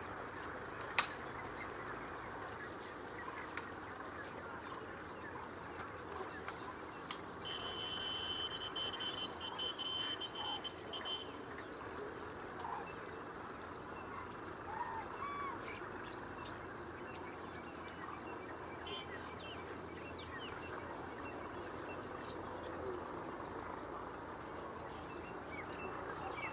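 Outdoor chorus of birds calling, many short chirps overlapping throughout, with a high steady buzz or trill lasting about three seconds a quarter of the way in.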